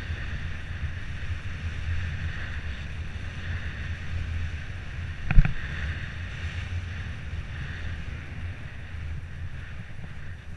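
Wind buffeting the microphone of a camera mounted on a moving bicycle, with a steady rumble from riding over the asphalt. A single sharp knock comes a little past halfway.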